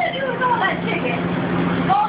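Indistinct voices talking over a steady low mechanical hum.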